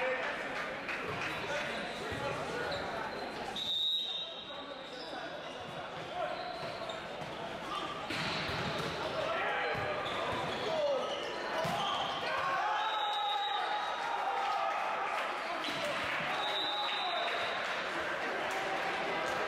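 Volleyball rally in a large, echoing gym: the ball being struck, with players' voices calling out and a few short, high-pitched tones.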